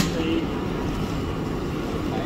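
Steady outdoor background rumble, like distant traffic or wind on the microphone, with faint voices in it and a sharp click right at the start.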